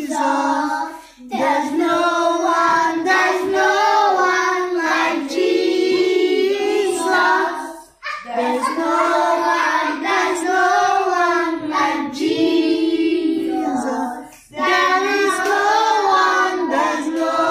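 A group of children singing together in sung phrases, with short pauses about a second in, at about eight seconds and near fourteen seconds, and some hand clapping along.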